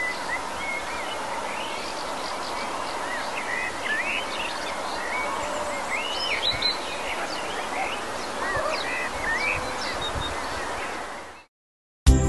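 Many small birds chirping and calling in quick, overlapping short notes over a steady hiss, a morning birdsong ambience; it cuts off suddenly near the end.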